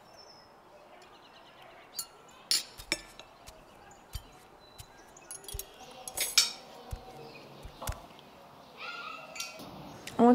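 Scattered clinks and clatters of dishes and cutlery: sharp knocks coming singly or a few at a time, with short gaps between.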